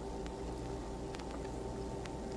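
Steady low hum and hiss of background noise with a few faint clicks, and no clear event.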